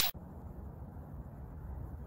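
Steady, fairly quiet outdoor background noise, mostly a low rumble with some hiss, as picked up by a phone microphone in the open; the tail of a swoosh sound effect cuts off right at the start.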